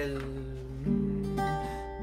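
Acoustic guitar played: notes ring out, with fresh notes plucked a little under a second in and again about halfway through.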